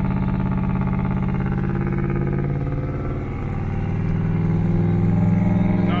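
Twin-turbo 427 cubic inch LS-based V8 of a Buick Skylark, heard from inside the cabin while driving: a steady engine drone that eases slightly about halfway, then builds gradually.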